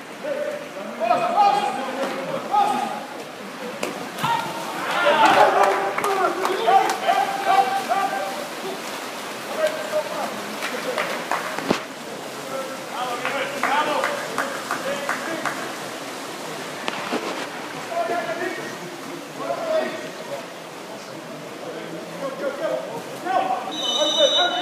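Unintelligible shouting and calling voices of people at a water polo match, echoing in an indoor pool hall, with scattered sharp clicks and knocks. The calls are loudest a few seconds in.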